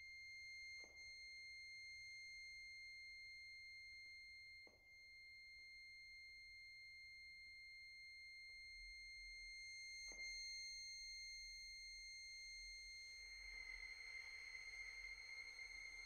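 Very soft chamber music for bayan, violin and cello: a single very high, thin note held steadily, with a few faint clicks, and a soft breathy hiss joining under the note about thirteen seconds in.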